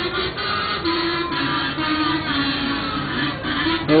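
Music with a held melody line that steps slowly down in pitch and rises again near the end.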